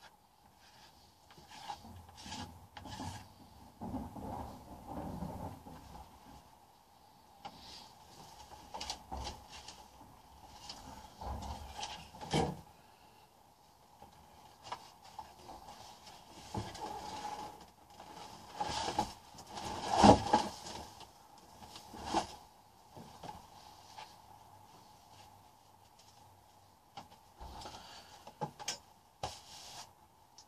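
Thick white paint ground being rubbed and scraped across a painting panel in irregular spells, with scattered knocks on the table, the loudest about two-thirds of the way through.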